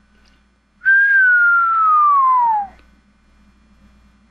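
A person whistling one long falling note, a descending whistle of about two seconds starting about a second in.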